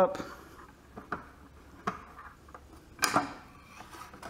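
Twin-screw wooden bench vise being opened by hand, its threaded-rod screw turned through a steel nut. It gives a few light clicks and one sharper, louder clack about three seconds in.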